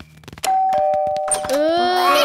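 Two-note doorbell chime, a higher note followed by a lower one, about half a second in, with the notes held until a voice starts about a second and a half in.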